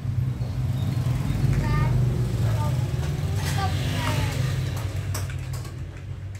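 A low rumble that swells and then fades away near the end, with a few brief snatches of voice over it.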